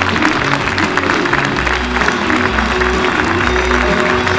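A hall audience applauding steadily over loud recorded music with a melody and a bass line, the bass growing stronger about a second and a half in.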